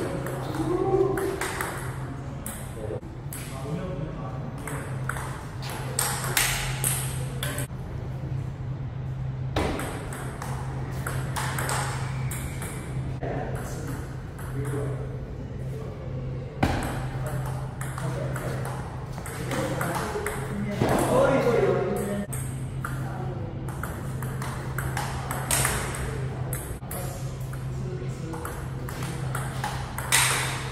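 Table tennis rallies: the ball is struck by paddles and bounces on the Donic Waldner table in a run of sharp, quick clicks, broken by short pauses between points.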